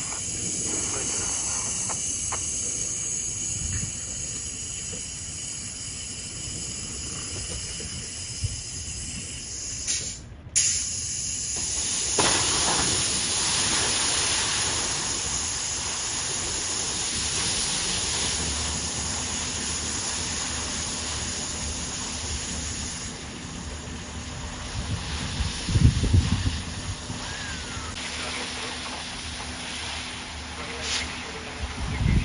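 A grass fire burning for the first ten seconds; after a break, a fire hose spraying water onto the burning stubble, a steady hissing rush of spray and steam. A brief louder rumble comes about 26 seconds in.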